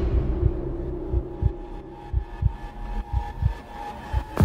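Trailer sound design: low heartbeat-like thuds, mostly in pairs about once a second, over a faint held tone.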